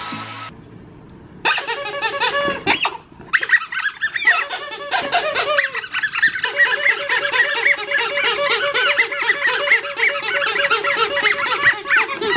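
Squeaky plush dog toys squeezed over and over, a fast run of pitched squeaks that starts about a second and a half in and breaks off briefly around the three-second mark.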